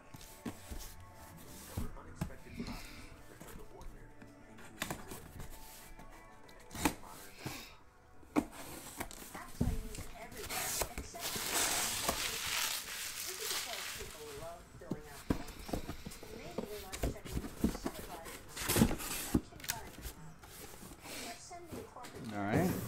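A cardboard shipping case being handled and unpacked, with scattered knocks and scrapes. About halfway through comes a few seconds of bubble wrap crinkling as it is pulled out of the box.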